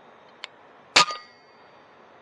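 A single shot from a .22 FX Impact M3 air rifle about a second in, with a metallic clang and ring that fades within about half a second. A faint click comes about half a second before the shot.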